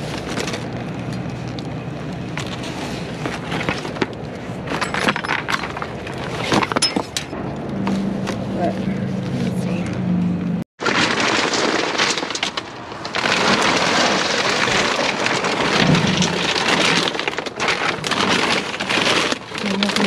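Rummaging in a metal dumpster: sharp crackles and clicks as a cracked mirror's glass is handled in the first half, then steady crinkling and rustling of plastic bags and cardboard being pushed aside.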